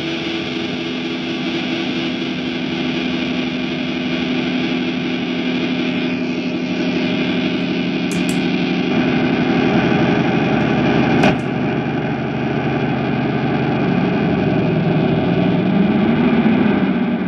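Squier Bullet Stratocaster leaning against the speaker cabinet and feeding back through distortion and effects pedals: a sustained, droning howl of several held tones that builds slowly and changes texture as the pedals are worked. A sharp click comes about two-thirds of the way through.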